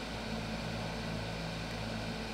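Steady low hum with a faint hiss, a constant background drone without any change.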